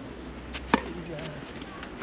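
A tennis racket striking the ball on a serve: one sharp pop a little under a second in.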